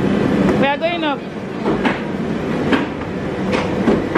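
Busy indoor market hubbub of background voices and a steady rumble. A voice calls out briefly about half a second in, and a few sharp knocks come at roughly one-second intervals.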